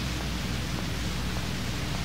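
Steady hiss of recording background noise with a low hum under it, in a pause between spoken sentences.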